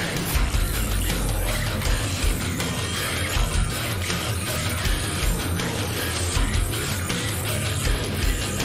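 Theatrical horror-style extreme metal song playing: a dense band mix with heavy bass and recurring drum hits.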